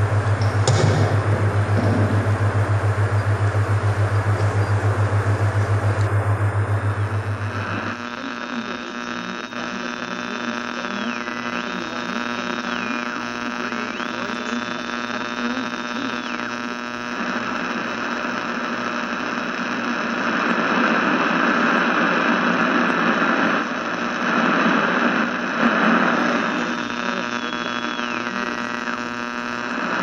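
Experimental electronic noise music: a loud, pulsing low hum for about eight seconds, then a dense drone of many steady tones over hiss, with a high whistling tone sliding up and down several times.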